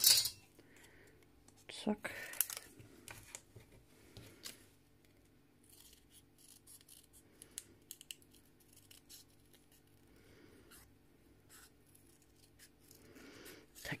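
Small scissors cutting out a traced shape in thin orange paper: a run of short, quiet snips.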